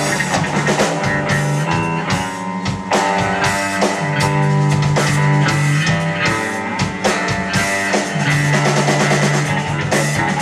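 Live instrumental rock from two electric bass guitars and a drum kit: held low bass notes over ringing higher bass lines, with steady drum and cymbal hits.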